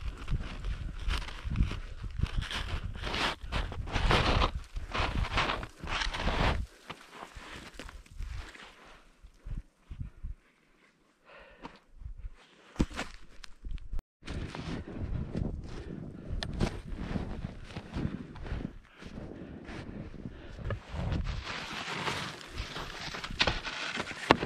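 Irregular crunching and scuffing of snow as a skier shifts about on a steep slope of deep snow, with a quieter stretch in the middle.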